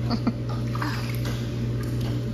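Pool water splashing and lapping as a child paddles in a float vest, over a steady low hum.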